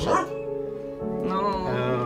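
Background music with steady held notes, and a short, wavering, high-pitched sound from a voice or animal about a second and a half in.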